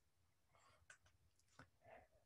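Near silence: room tone in a pause between sentences, with a few very faint ticks.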